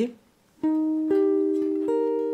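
Clean archtop electric jazz guitar picking an E-flat major 7 arpeggio one note at a time, rising: three notes about half a second apart, starting just over half a second in, each left ringing so they stack into a chord.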